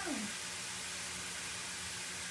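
Meat frying in a pan on the stove, a steady sizzling hiss with a faint steady hum beneath.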